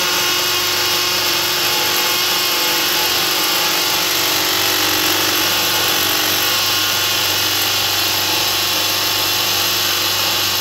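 Milwaukee M12 Fuel 3404 hammer drill running loud and steady in hammer mode, boring a half-inch masonry bit into a concrete block without a pause.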